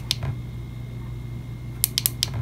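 Side push-button switch of a MyMedic solar power bank clicking: one sharp click just after the start, then a quick double click near the end. The double press switches the power bank's built-in flashlight on.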